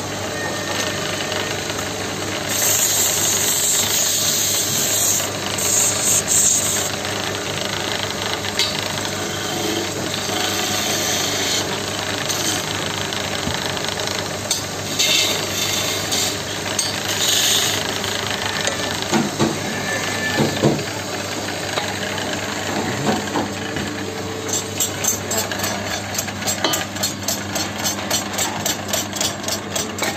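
Power-driven wood lathe running with a steady hum while a hand-held turning chisel cuts a spinning wooden spindle, the cuts coming as spells of hissing and scraping. Near the end comes a fast, even clatter.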